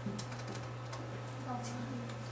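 Computer keyboard being typed on: scattered, irregular key clicks over faint background voices and a steady low hum.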